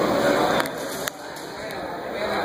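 Indistinct voices of onlookers talking, dropping off about a second in, with a few sharp clicks.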